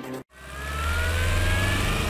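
Broadcast news intro sound effect: the theme music breaks off about a quarter second in, and a deep swell rises in and holds, with a thin tone slowly climbing in pitch above it.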